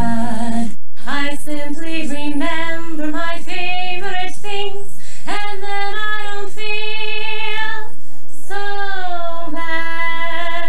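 Unaccompanied solo female singing: a melody of long held notes in a high voice. About a second in, one woman's note breaks off and another woman's voice takes up the singing.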